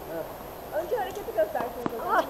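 Voices talking on the court, with one sharp knock of a tennis ball near the end.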